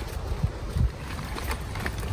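Wind buffeting the microphone in uneven low gusts of rumble.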